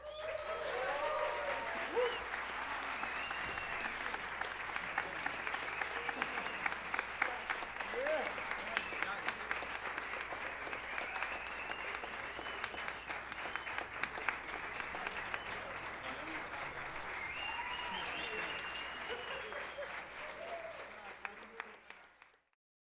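Audience applauding, a dense, steady clapping that starts suddenly, with cheering voices and whistles over it, and fades out at the end.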